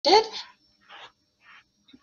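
A brief vocal sound with a sliding pitch, then two faint breathy sounds.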